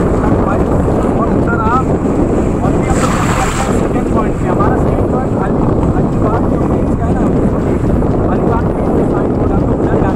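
Wind buffeting the microphone in a steady, loud rumble, with faint voices in the background.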